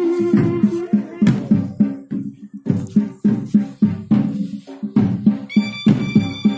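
Live Himachali folk music for a group dance: drums beating a steady rhythm of about three to four strokes a second, with a wind instrument holding a note that breaks off about a second in and another high held wind note coming in near the end.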